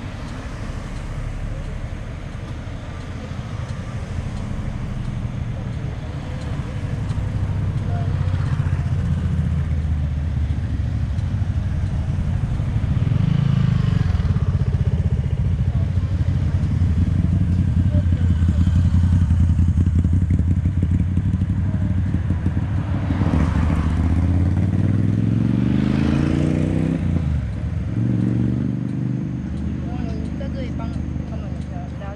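Motorcycle engine running under way. Its pitch climbs steadily for several seconds late on, then drops sharply just before the end.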